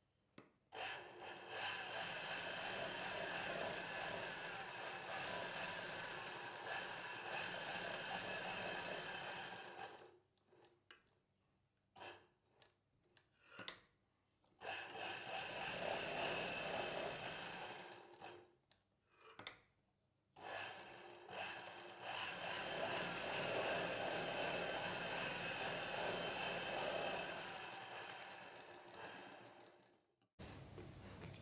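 Sewing machine stitching a seam in three runs, roughly nine, four and eight seconds long, with short pauses between them marked by a few small clicks.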